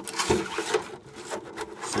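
Clear polycarbonate RC body shell being handled, its stiff plastic rubbing and scraping against the work mat and hands in short, irregular scrapes.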